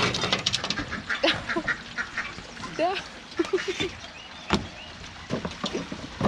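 Live crawfish and a wire-mesh trap clicking and scraping on a glass tabletop, with a quick run of clicks at the start and scattered clicks after. About three seconds in, a short run of voiced calls: one rising note, then four quick short ones.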